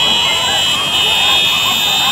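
A loud, high-pitched buzzing tone held steady, over a crowd's many voices calling and shouting.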